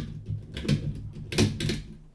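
Plastic clicks and knocks from a LEGO Technic CVT model as it is handled and its cranks are turned: four or five irregular sharp clicks over a steady low hum.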